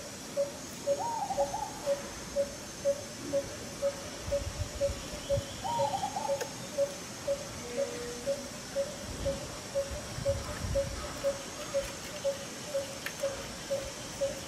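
A bird repeating a single low hooting note about twice a second, steady throughout, with two short higher calls about a second and about six seconds in.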